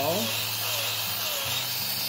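Hoof Boss hoof trimmer with an eight-tooth chain blade disc running with a steady hum as it cuts down a goat's outside hoof wall. The hum dips briefly about one and a half seconds in.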